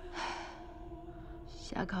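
A short, breathy sigh, then a woman starts to speak near the end.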